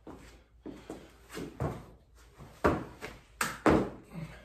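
A person doing a burpee on rubber gym floor mats: scuffs and thuds as the body drops to the floor and pushes back up, then a sharp clap and a heavy landing thump from the jump near the end.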